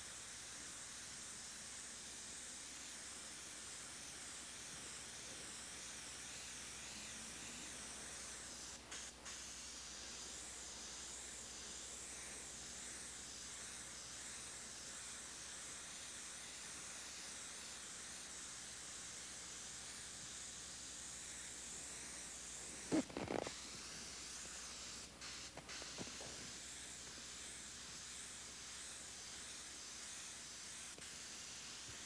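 Bottom-feed airbrush spraying paint with a steady hiss of air, which breaks off briefly twice. A short pitched sound comes about three-quarters of the way through.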